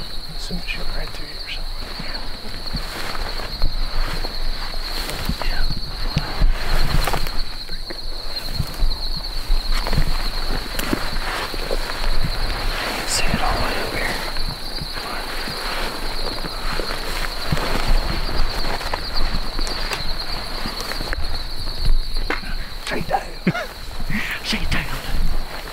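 A steady, high-pitched chorus of crickets, with irregular footsteps swishing through tall dry grass.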